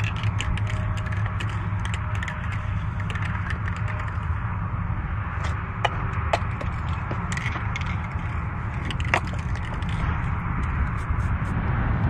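Wind buffeting the microphone as a steady low rumble, with scattered light clicks and rattles throughout, a few sharper ones about six and nine seconds in.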